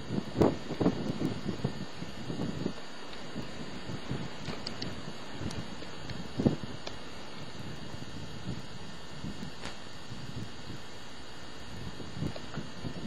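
Wind buffeting the microphone, with a few short low knocks of the camera being handled in the first three seconds and one sharper knock about six and a half seconds in.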